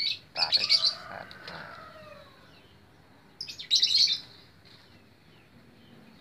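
Small birds chirping in short rapid bursts, loudest at the very start and again about four seconds in, with fainter short calls after.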